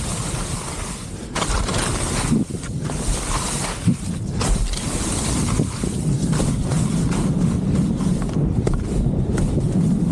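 Wind rushing over the camera's microphone while skiing downhill, with skis hissing and scraping over slushy spring snow and a couple of brief knocks around the middle.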